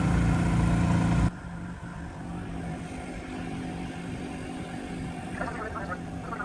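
A steady engine hum for about the first second, dropping away suddenly to quieter outdoor background noise.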